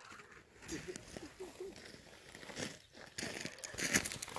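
Faint, muffled voices, then a rustling, scuffing noise from about three seconds in, with a sharp knock near the end.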